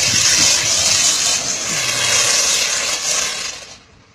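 Car-wash spray machine hissing loudly and steadily, then cutting off shortly before the end.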